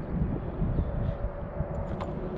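Strong wind buffeting the camera's microphone: a steady low rumble.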